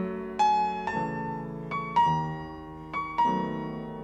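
Solo piano playing slow classical music: single melody notes in the upper register struck about once or twice a second and left to ring over sustained lower notes.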